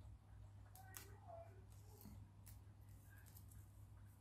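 Near silence: a steady low hum with a few faint clicks from a paper loop and a plastic drinking straw being handled.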